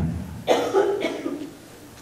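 A person coughing once, about half a second in.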